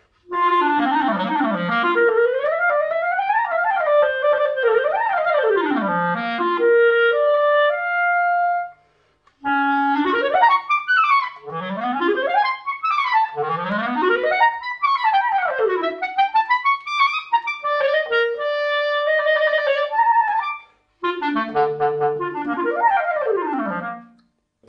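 Solo clarinet fitted with a Vandoren Masters CL5 mouthpiece, played in fast scales and arpeggios that sweep up and down across its whole range. Three phrases, with short breaks about nine and twenty-one seconds in.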